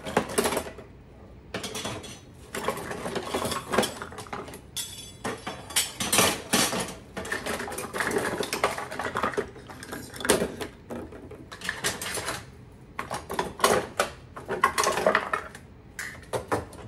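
Kitchen utensils and cutlery clinking and rattling as they are rummaged through and lifted out of a wooden drawer, in irregular clattering spells with brief pauses.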